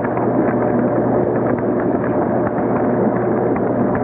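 Water churning hard in a motorized whirlpool test tank: a steady, loud rushing with a low hum underneath.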